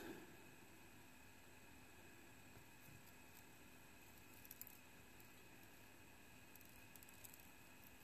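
Near silence: room tone with a faint steady hum and a couple of faint ticks.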